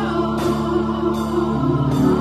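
Gospel choir singing held notes over electric keyboard accompaniment, with a woman at the keyboard singing lead into a microphone. The chord changes about one and a half seconds in.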